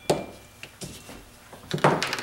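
A sharp knock of a wooden carving block on a tabletop just after the start, then a few light handling clicks and a louder rustling clatter near the end as the block and pencil are handled and set aside.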